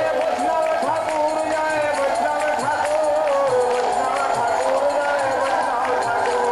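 Devotional kirtan: a group of voices singing together over percussion that keeps a steady beat.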